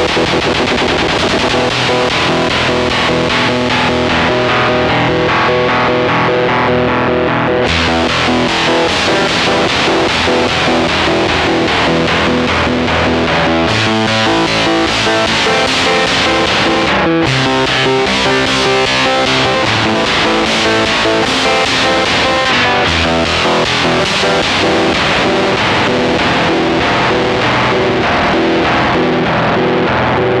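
Electric guitar played through a Stone Deaf Rise & Shine fuzz, octave and tremolo pedal, giving a thick fuzzed tone. The sound turns noticeably brighter about eight seconds in and shifts again around fourteen and seventeen seconds in as the pedal's settings change.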